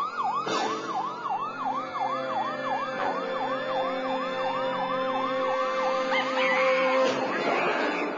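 Police-style sirens yelping in fast up-and-down sweeps, about three a second, with a second siren tone gliding and holding beneath. The sirens cut off about seven seconds in and give way to a short, louder burst of noise.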